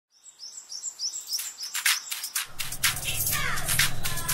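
Birds chirping: a quick run of short, high repeated chirps, then sharper calls, with a steady low drone coming in about halfway through.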